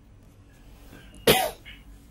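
A single short cough about a second in, sudden and loud against quiet room tone.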